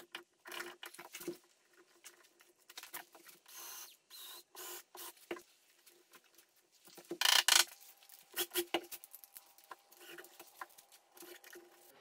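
Wood chisel scraping and paring in the latch keep recess of a door lining, then small metal clicks and knocks as the latch keep is pressed into the recess, loudest about seven seconds in.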